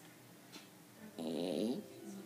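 A pet's single short pitched call, starting just past a second in and lasting a little over half a second, over a quiet room background.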